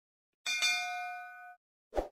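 Sound effect of a bell-like notification ding, struck twice in quick succession about half a second in and ringing out for about a second, followed by a short pop near the end.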